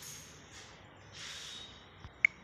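Quiet room with a faint, half-second breathy rush of air a little past a second in: a person exhaling through the nose close to the microphone.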